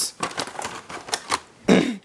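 Plastic VHS cassette being handled and turned over on a wooden floor: a run of light clicks and rattles, followed near the end by a short, louder rough noise.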